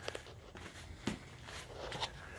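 A few soft footsteps and light knocks over quiet room tone.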